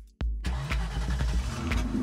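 Car engine sound effect: a sudden start about a quarter second in, then the engine running, over steady background music.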